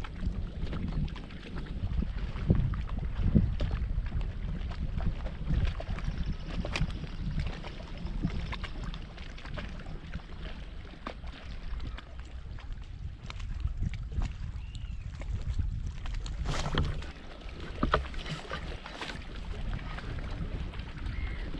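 Low wind rumble on the microphone and water against an inflatable float tube, with scattered small clicks and knocks from fishing tackle being handled.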